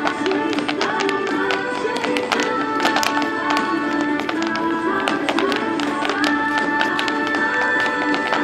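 An Irish dance tune playing steadily, its melody moving in quick held notes, with sharp taps from the dancers' shoes striking the pavement throughout.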